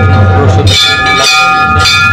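Hindu temple bell being rung by hand, struck twice about a second apart. Each strike rings on with several clear metallic tones that run into the next.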